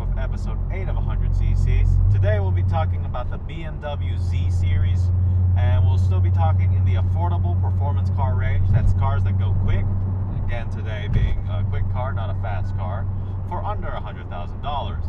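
Exhaust drone of a car with its mufflers removed, heard steadily from inside the cabin while driving, easing briefly a few seconds in; people are talking over it.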